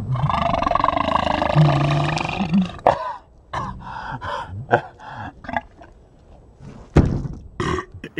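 A person's long, loud burp lasting about three seconds, brought up by Sprite Zero drunk on top of banana. Then come short bursts of laughter and a sharp knock near the end.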